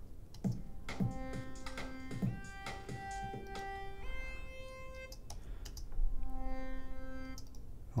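A software synthesizer lead part playing back held notes with rich, buzzy harmonics, the pitch changing every second or so, on a track carrying a volume fade-in automation; its level rises about six seconds in. A couple of short clicks sound near the start.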